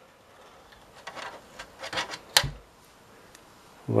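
Fingers rubbing and picking old double-sided tape off the metal edges of an LCD TV's panel frame: faint, irregular scratchy scraping that ends with one sharp click about two and a half seconds in.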